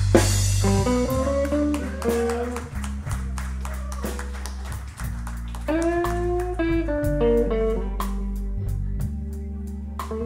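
A live blues band playing a slow blues: electric guitar lead lines with bent notes over a steady bass guitar and drums, with a cymbal ticking steadily near the end.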